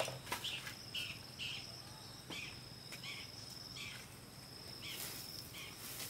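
Insects trilling outdoors in a steady, high, thin drone, with short scratchy swishes recurring about twice a second and a light knock right at the start.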